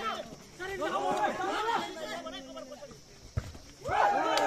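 Several voices shouting and calling out across a volleyball court during a rally, with one sharp smack of a hand hitting the volleyball about three and a half seconds in.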